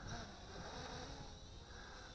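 Faint, steady background noise with no distinct sound standing out.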